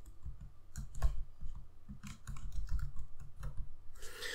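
Typing on a computer keyboard: an irregular run of soft key clicks, with one louder keystroke about a second in.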